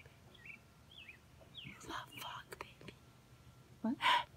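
Faint whispering, with a few short bird chirps in the background during the first second or so.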